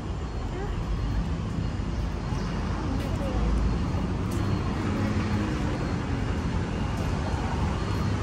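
Street traffic noise: a steady rumble and hiss of passing vehicles, with people talking faintly in the background.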